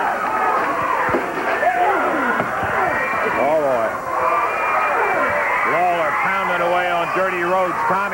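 A studio crowd shouting and screaming over one another, with several high, wavering cries rising and falling in pitch; near the end one voice holds a steadier, lower yell.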